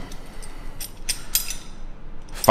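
Steel combination wrenches clinking against each other as they are handled: several light, sharp metallic clinks.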